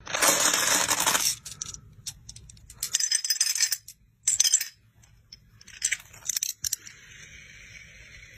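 Loose steel bearing balls clinking and rattling against each other and against a ball bearing's steel rings as they are handled and dropped in. There is a long rattle in the first second, then several shorter bursts of clinking.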